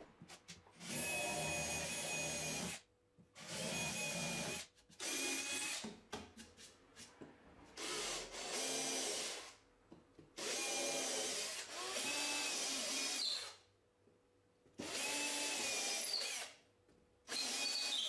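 Cordless drill with a twist bit boring holes into a wooden panel in about eight short runs of one to two seconds each. The motor whines steadily while it runs, with short pauses between holes.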